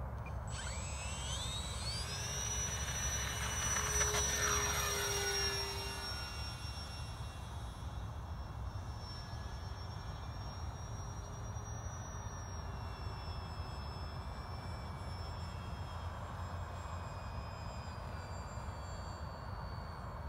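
Twin-motor radio-controlled model OV-10 Bronco throttling up for takeoff: the high whine of its motors rises sharply over the first two seconds, is loudest about four seconds in as the plane goes past, then drops a little in pitch and settles into a steady whine as it climbs away.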